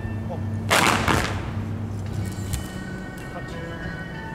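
Several kung fu fans snapped open together just under a second in, a sharp crack in two close snaps, over background music.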